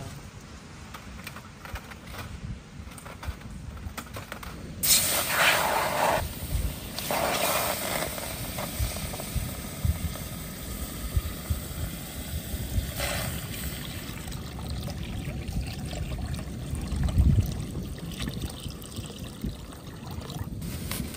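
Water poured into a steel wok on a small gas camping stove, loudest in bursts about five and seven seconds in, over a steady hiss of falling rain. Faint clicks in the first seconds come from the folding aluminium windscreen being set around the wok.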